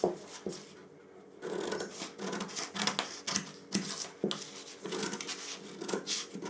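Large tailor's shears cutting through suiting cloth along a chalk line: a run of irregular crisp snips and rasping cloth noise, starting about a second and a half in.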